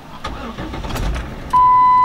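Jeep Wrangler's 3.8 L V6 cranking and catching into a start, its first start on new spark plugs after a misfire. About one and a half seconds in, a loud steady electronic warning beep from the dashboard begins.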